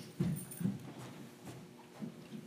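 Room noise with a few soft, low thumps, the two clearest about a quarter of a second and two-thirds of a second in, from people moving about the room.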